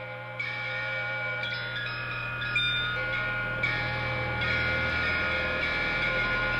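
Music: a quiet passage of ringing, held electric guitar notes over a low steady hum, slowly getting louder.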